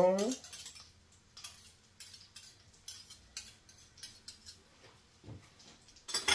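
Metal spoon clinking and scraping against a mixing bowl, in scattered light clicks.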